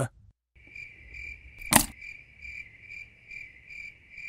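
Cricket chirping sound effect, a steady high trill pulsing about twice a second, the cartoon gag for an awkward silence. A single sharp click cuts through it a little under two seconds in.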